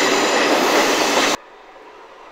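Loud, even noise of a train moving through the station beside the platform, cut off suddenly about a second and a half in, leaving only faint background hiss.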